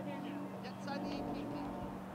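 Distant high-pitched voices calling out across an open field, over a steady low hum.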